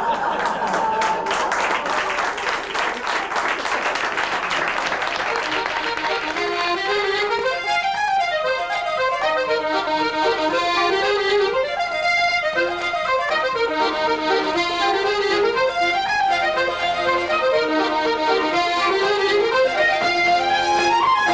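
Audience applause, giving way about six seconds in to an Irish traditional dance tune played on accordion, with quick running notes.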